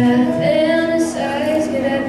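A young teenage girl singing a country song, accompanied by her own strummed acoustic guitar.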